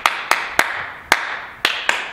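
Single hand claps from a group of people, sharp and irregularly spaced, five in two seconds, each followed by a brief ring of the room.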